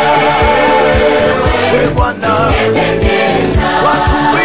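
Gospel song: voices singing a melody together over a steady beat.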